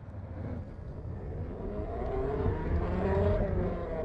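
A low rumble with wavering tones swells, loudest about three seconds in, then starts to fade out.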